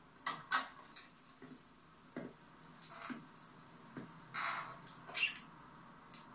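A television drama's soundtrack picked up from the TV speaker: a few short, scattered clinks and rustles with no speech.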